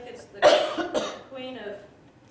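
A person coughing: a loud, harsh cough about half a second in, followed by a weaker second cough about half a second later.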